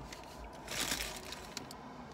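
A brief crinkling rustle of the paper taco wrapper, about a second long near the middle, with a few small clicks around it.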